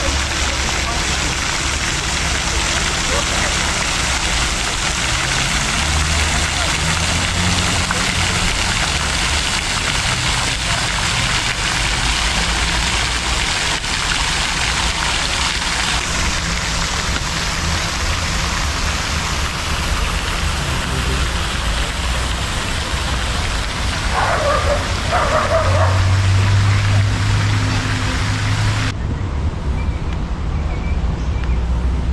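Garden pond fountain spraying and splashing into the water, a steady hiss that drops away about a second before the end.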